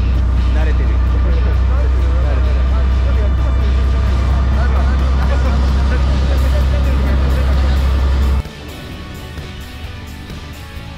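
A fishing boat's engine running under way, a heavy steady low drone, with background music over it. The drone stops abruptly about eight seconds in at a cut, leaving the music quieter.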